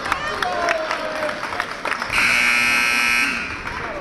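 Gym scoreboard horn sounding once, a steady buzz of a little over a second starting about two seconds in, at a stoppage ahead of a substitution. Before it, scattered court noise and voices.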